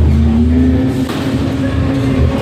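Ghost-train ride car running: a loud low rumble with a steady hum that rises slightly in pitch.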